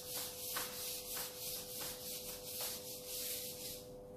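A handheld whiteboard eraser rubbed back and forth across a whiteboard, wiping it clean in a quick run of hissing strokes, about two a second.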